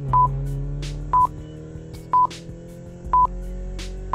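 Countdown timer sound effect: a short, high electronic beep once every second, four times, over sustained background music.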